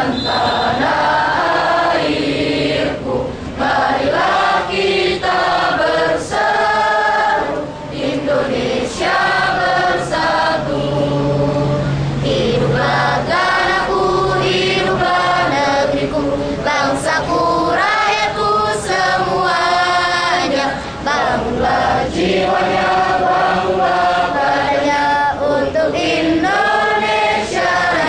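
Large gathering of men and women singing a song together in unison, loud and steady, with brief breaks between phrases.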